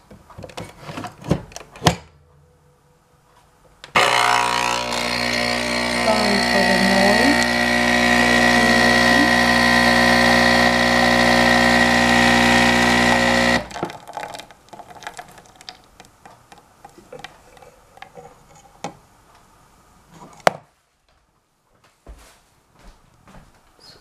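Nespresso capsule machine's pump brewing an espresso: a loud, steady buzz that starts about four seconds in, lasts about ten seconds and cuts off suddenly. A few clicks come before it and scattered light clicks after it.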